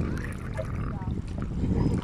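Shallow seawater sloshing around the legs of someone wading knee-deep, under an uneven low rumble.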